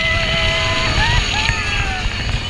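Open Radiator Springs Racers ride car running fast along its track, with wind rushing over the microphone and a rumble from the ride vehicle.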